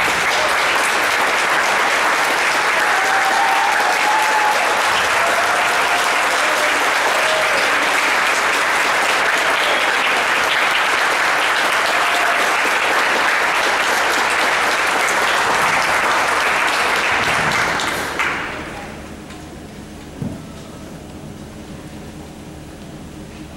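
Audience applauding steadily for about eighteen seconds, then dying away. A single knock sounds near the end.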